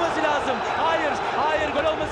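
A man's voice talking over the noise of a football stadium crowd.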